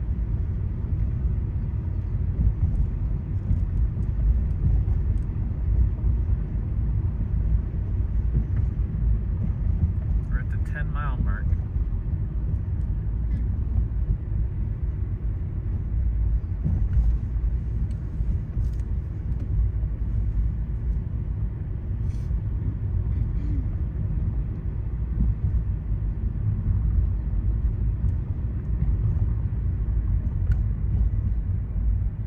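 Car driving up a paved mountain road, heard from inside the cabin: a steady low rumble of engine and tyre noise. A short, higher-pitched sound cuts in briefly about ten seconds in.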